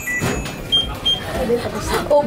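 Short electronic beeps from a microwave oven: one lower beep, then two higher beeps about a third of a second apart.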